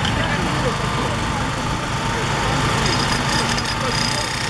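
An engine running steadily at a constant speed, most plausibly the power unit driving the hydraulic rescue tools on the hoses.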